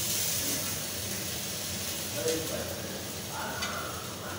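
Steady sizzling hiss of food frying in a pan, with faint voices in the background around the middle and near the end.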